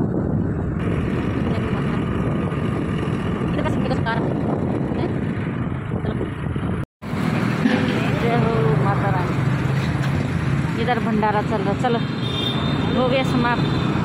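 Steady road and wind noise from riding a motorbike or scooter on a highway, with the engine running underneath. It cuts out abruptly for an instant about halfway through. In the second half, voices are heard faintly over the ride noise.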